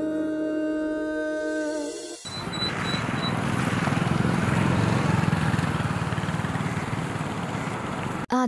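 Background music with long held notes for about two seconds, cut off abruptly, then a steady wash of road traffic noise.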